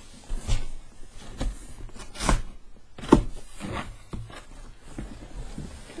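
A large cardboard box being handled and turned over on a desk: a string of thumps and scuffs of cardboard against the desktop, the loudest about two and three seconds in.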